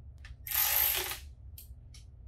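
Ratchet wrench clicking in one quick run of under a second as a drain plug is driven back in, with a few faint tool clicks before and after.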